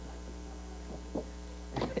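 Steady low electrical mains hum, with a voice faintly starting up just before the end.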